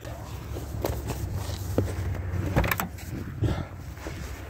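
Ford F-150 pickup engine idling with a low, steady hum while it warms up in the cold, heard from behind the truck. A few light knocks and clicks come over it.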